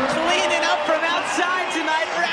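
Speech: a male basketball commentator talking over the game broadcast.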